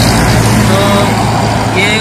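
Road traffic close by, with the steady low hum of a heavy vehicle's engine running.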